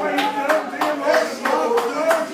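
Rhythmic hand clapping, about three claps a second, over voices.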